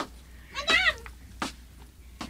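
A cat meowing once, a short call that bends up and down in pitch about half a second in, followed by a single short click.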